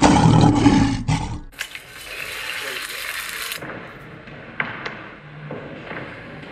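A loud roar for about the first second and a half. After it, a steady hiss runs until about three and a half seconds in, then quieter background sound with a few faint clicks.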